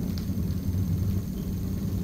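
Steady low background hum with a faint hiss, and no distinct events.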